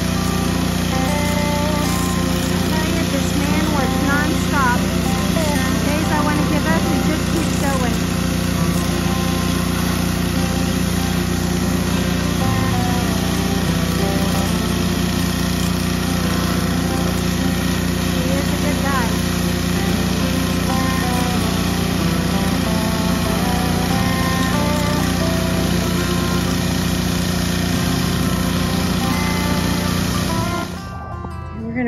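Small gasoline engine of a pressure washer running steadily at full speed while the wand sprays the wooden siding, with music playing over it.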